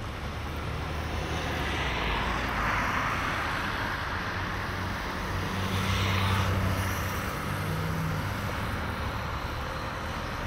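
Road traffic passing close by on a city bridge: a steady rush of tyres and engines, with two vehicles swelling past, one about three seconds in and a louder one with a low engine hum around six seconds in.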